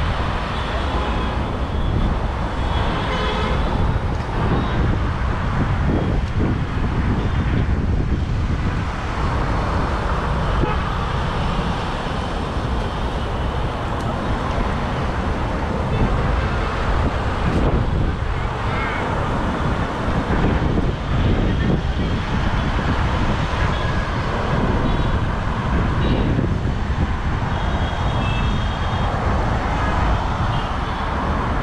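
Steady road traffic noise from a busy city road, with a few short car-horn toots near the start and again near the end.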